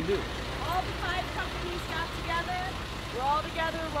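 Steady low rumble of an idling vehicle engine, with several people talking in the background.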